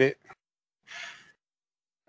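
The last syllable of a man's speech trails off. About a second in comes a single short intake of breath, a brief unpitched rush that is quieter than the speech, with silence on either side.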